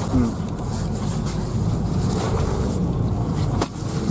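Steady low drone of engine and road noise inside the cabin of a moving car, with a short click near the end.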